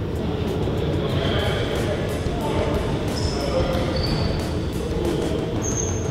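Basketball gym sounds: balls bouncing, sneakers squeaking on the court in short high squeaks, and players' voices echoing in the hall.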